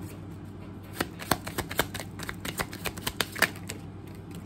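Deck of tarot cards being shuffled by hand: a quick run of card flicks and riffles that starts about a second in and goes on until near the end.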